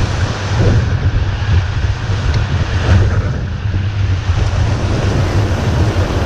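Rushing whitewater rapids under steady wind buffeting on an action camera's microphone, with a heavy, constant low rumble.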